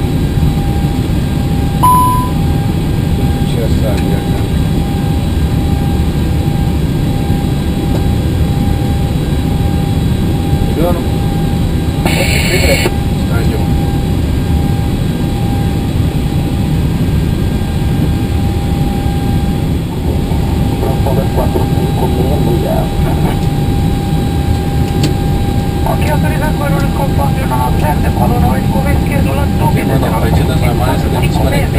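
Steady rushing cockpit noise in an Airbus A320-family cockpit on the ground during the start of engine number one. A short beep comes about two seconds in and a brief high-pitched burst around twelve seconds in.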